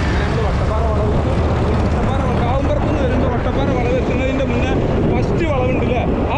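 A man talking in Malayalam over steady wind rush on the microphone and the running of the two-wheeler he is riding pillion on.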